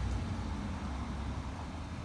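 Ford F750's 6.7 Power Stroke diesel idling: a low, steady rumble.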